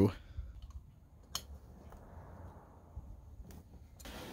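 Quiet hand-tool handling: a few small sharp clicks, the clearest about a second and a half in, as a small threaded plug coated in thread sealant and a hex key are handled at the engine, with a faint soft rustle in between.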